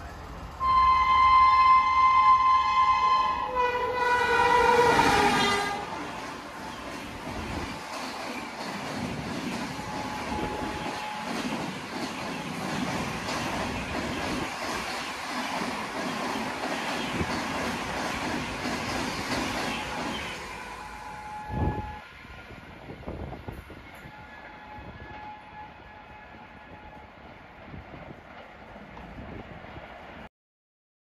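WAP7 electric locomotive horn sounding as the express approaches at about 130 km/h, its pitch dropping as the locomotive passes about four seconds in. The coaches then run past at speed in a loud, steady noise of wheels on rails and air, which dies away about twenty seconds in with a single knock.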